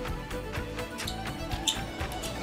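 Background music: held tones over a quick, regular beat of about four to five strokes a second.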